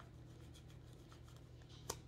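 Faint rustle of a tarot deck being shuffled by hand, with one sharp click near the end, over a low steady hum.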